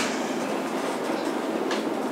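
Steady rushing background noise with no distinct events.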